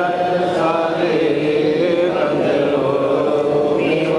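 Male chanting of a baith, an Islamic devotional praise song, in a slow melodic line with long, slowly bending held notes.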